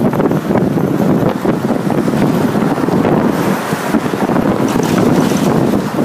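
Wind rushing steadily over the microphone at the window of a moving city bus, mixed with the rumble of the bus and traffic.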